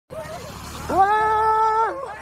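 A long drawn-out cry, held at one steady pitch for about a second and dropping away at the end, after a fainter short cry at the start.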